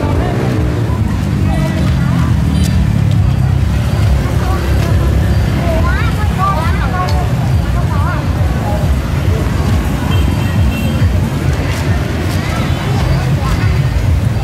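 Crowd chatter from many people on a busy street, with motorbikes passing and a heavy, continuous low rumble underneath.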